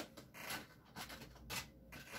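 Faint rubbing and brushing sounds, a few soft scrapes about half a second apart, over a low steady hum.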